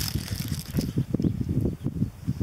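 Wind buffeting the microphone in irregular low gusts, with a paper burger wrapper crackling during the first second as the burger is bitten into.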